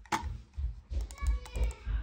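Fujitsu Siemens C7826 mini optical mouse buttons clicking: one sharp click just after the start, then a quick run of several clicks about a second in, with dull low knocks as the mouse is handled on its pad.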